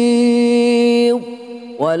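A man reciting the Quran in a melodic chant. He holds one long, steady note, which falls away just after a second in. After a brief breath pause, his voice comes back in near the end.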